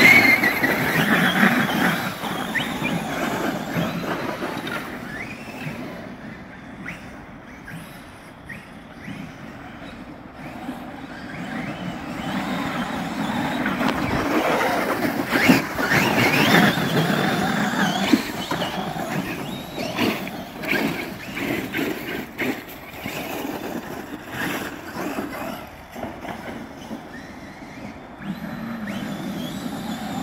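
Three Traxxas X-Maxx 8S electric RC monster trucks driving in slushy snow: their brushless motors whine as they speed up and back off, with tyres churning through the snow. The sound rises and falls with their passes and is loudest about halfway through.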